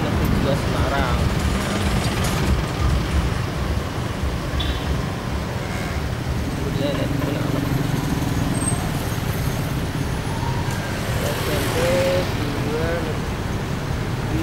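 City street traffic heard from a moving vehicle: a steady low rumble of engines and road noise, with cars and motorcycles around. A few short wavering pitched sounds come near the end.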